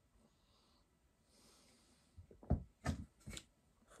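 A quiet sip and swallow of beer from a glass, with a soft breath out, followed about two seconds in by three or four brief, sharper sounds.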